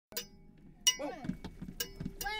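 Foley props being struck: a faint metallic clink right at the start, then a louder clink with a short ring just under a second in, followed by a few light knocks. A voice speaks briefly after the second clink.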